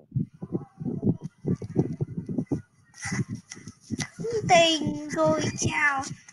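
Indistinct voice over a video call: low, choppy murmuring at first, then a higher, drawn-out voice from about halfway through, with no clear words.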